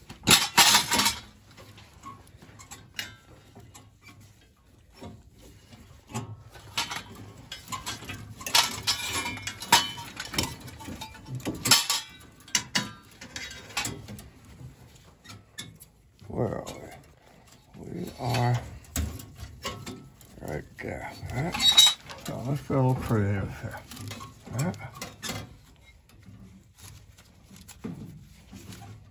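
Gloved hands handling and uncoiling pilot tubing at a gas valve: scattered light metallic clicks and rattles, heaviest right at the start and again around the middle. Quiet murmured voice or humming comes in briefly a few times in the second half.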